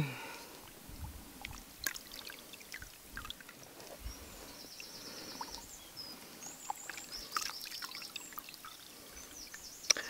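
Faint water sloshing and dripping with small splashes as a J-cloth paper-making frame is dipped sideways into a dish of paper pulp and water, swirled and lifted out.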